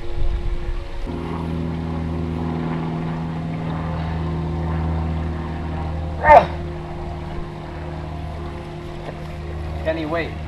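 A steady low drone of several held tones sets in about a second in. About six seconds in, a short, loud cry from a young man's voice rises and falls over it.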